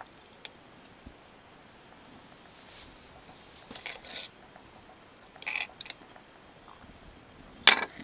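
Knife and fork working on a ceramic dinner plate while cutting through cooked pork ribs: a few light clicks, short scrapes, and a sharper clink near the end.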